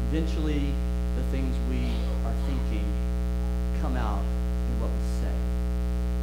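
Steady electrical mains hum with a stack of overtones, running under a man's voice speaking for the first five seconds or so.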